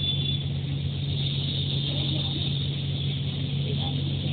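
Bus engine running with a steady low drone, heard from inside the bus in slow traffic.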